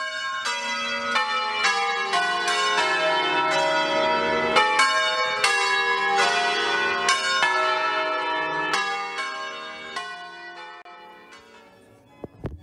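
Church bells of several pitches rung one after another, about two strikes a second, fading away over the last few seconds.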